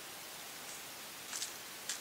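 Steady background hiss, with two short scuffs in the second half.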